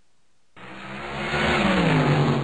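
Cartoon sound effect of a revving car engine, rising in pitch and growing louder, starting about half a second in, used for the animated bull charging off at speed.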